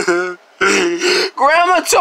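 A person's voice: a held sung note breaks off, a short raspy throat-clearing sound follows, then chanted singing starts up again.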